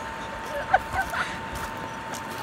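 A few short bursts of people's voices, the loudest about three-quarters of a second in, over a faint steady tone.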